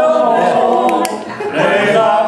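A small group singing unaccompanied in parts, several voices holding notes together, with a short break between phrases about a second and a half in.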